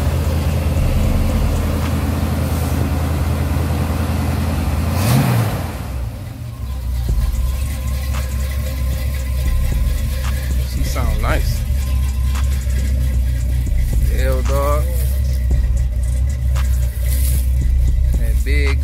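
Classic Chevrolet car engine idling, with a short rise in pitch about five seconds in, after which it runs on at a steady, quieter low idle.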